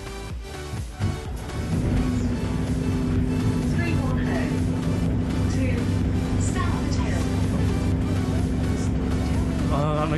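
Background music that cuts out about a second in, followed by a London double-decker bus running, heard from inside on the upper deck: a steady low drone with a held hum.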